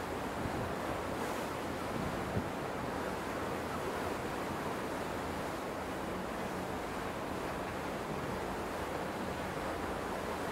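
Steady rush of sea water and wind on the deck of a moving coastal ship, the Hurtigruten's MS Finnmarken, with a faint low steady hum underneath. One brief knock a little over two seconds in.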